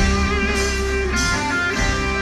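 Live band music: a Les Paul-style electric guitar plays a lead solo of sustained single notes with wavering vibrato over bass and drums.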